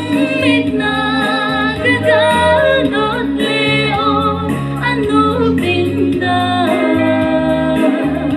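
A woman singing solo into a handheld microphone, holding long notes that waver, over steady instrumental accompaniment.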